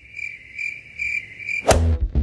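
Cricket chirping sound effect, the comic 'crickets' gag for an empty, disappointing reveal: a regular high chirping that stops suddenly near the end, where music comes back in with a hit.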